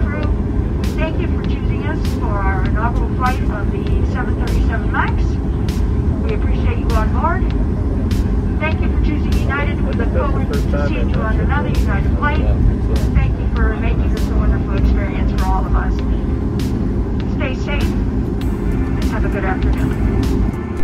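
Steady low rumble inside the cabin of a Boeing 737 MAX 9 taxiing to the gate, its CFM LEAP-1B engines at idle.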